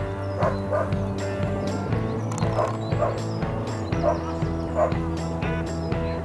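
Background music with a steady beat, over which a German Shepherd gives several short yipping barks.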